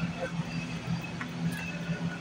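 Shopping cart rolling along a store aisle, its wheels and basket rattling, over a steady low hum.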